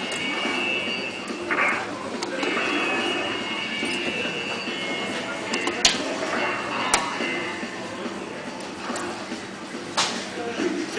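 Arcade background music and chatter, with the whir of the Robo Catcher's small humanoid robot moving its arms and body under joystick control. Two sharp clicks come about a second apart near the middle.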